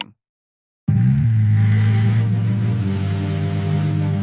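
Audio track of an AI-generated (Veo 3.1) video of a motorcycle racing on a wet road: a loud, steady low drone with a hiss over it, starting suddenly about a second in after a short silence.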